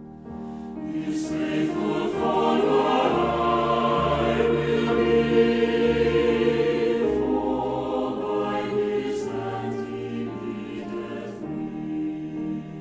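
A choir singing a hymn, swelling louder through the first half and easing off toward the end.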